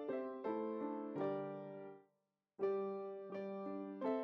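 Background piano music: soft notes struck one after another and left to ring. It drops out to silence for about half a second midway, then resumes.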